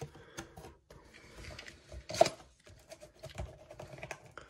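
Cardboard trading-card blaster boxes being handled and moved by hand: scattered light taps and scrapes, with one sharper knock about two seconds in.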